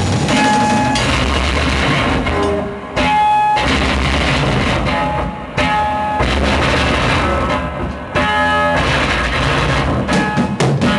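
Live avant-noise rock band playing loud: electric guitar through a Marshall amp, with drums and cymbals. The playing comes in phrases broken by short drops about every two and a half seconds. It is captured on a compact camera's built-in microphone.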